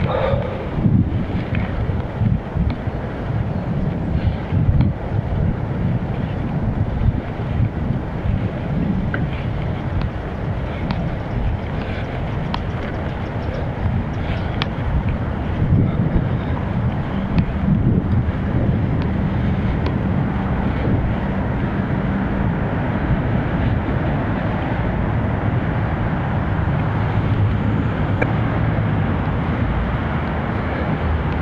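Wind buffeting the microphone of an Akaso Brave 7 action camera on a moving bicycle: a steady low rumble that swells and dips with the gusts.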